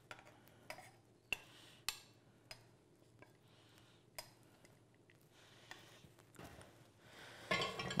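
Metal kitchen tongs clicking, with light knocks as cooked portobello mushroom caps are set down one by one on a wooden board: a few scattered taps, several seconds apart at times.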